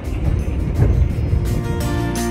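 Low, even rumble of a moving train. About a second and a half in, music with held chords comes in over it.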